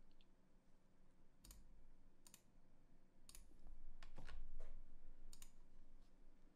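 Faint computer mouse clicks, about half a dozen spread over several seconds, some in quick pairs.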